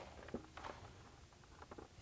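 Faint handling noises: a few small clicks and soft rustles as small screws are picked out of a cardboard hardware box.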